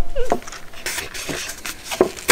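A short gliding voice sound, then light, scattered rustles and taps from handling a paper instant-ramen cup.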